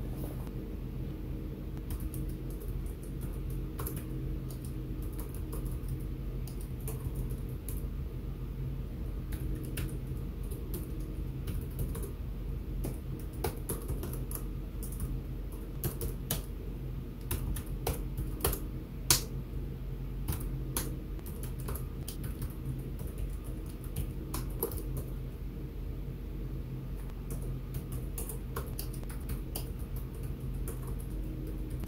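Typing on a computer keyboard: irregular runs of keystrokes over a steady low hum, with one sharper, louder key click about two-thirds of the way through.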